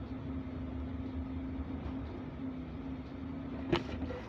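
Cab noise of a Volvo truck tractor on the move: the diesel engine's steady low rumble with a faint steady hum over it. A single sharp click sounds near the end.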